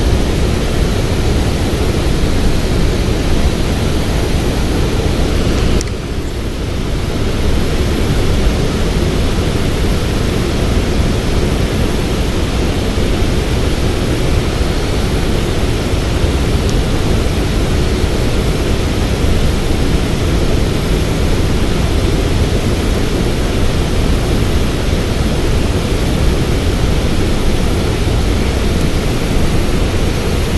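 A steady rushing noise, heaviest in the low end, with a brief dip about six seconds in.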